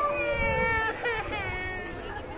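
A young child crying out in two drawn-out cries: the first lasts nearly a second and sinks slightly in pitch, the second is shorter.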